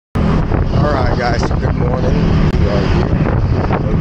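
A person's voice over a loud, steady low rumble of wind on the microphone from a moving moped.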